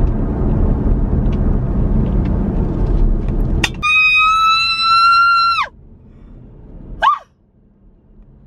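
A loud low rumble for the first few seconds gives way to a woman's voice belting one long, high sung note for about two seconds that slides down as it ends. A short rising-and-falling yelp follows about a second later.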